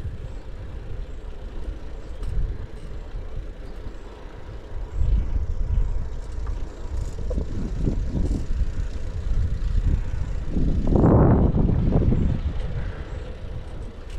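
Wind rumbling on the microphone of a camera riding on a moving bicycle, with tyres running on asphalt. The rumble surges about five seconds in and again, loudest, for a couple of seconds around eleven seconds in.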